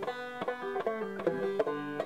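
Old-time banjo picking a steady run of plucked notes, about five a second, at a low level.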